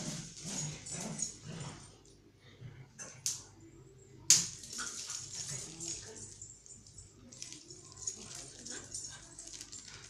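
A small dog's sounds as it moves about on a tiled floor. About four seconds in comes a sharp click, the loudest sound, followed by scattered light ticks.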